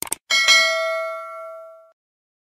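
Two quick mouse clicks from a subscribe-button animation sound effect, then a notification bell ding. The ding is struck twice in quick succession and rings on, fading out near the end.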